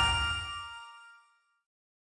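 An electronic chime from an online dice game, a struck ding with a low thump under it, ringing and fading away within about a second and a half.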